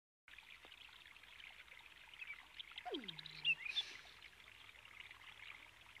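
Faint soundtrack ambience of an anime scene: a steady watery hiss with small ticks. About three seconds in, one falling tone drops and holds low for about half a second, followed by a few short high chirps.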